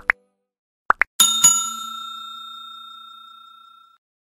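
Subscribe-animation sound effects: two pairs of quick rising pops, at the start and about a second in, then a bell-like ding struck twice in quick succession that rings on and fades over about two and a half seconds.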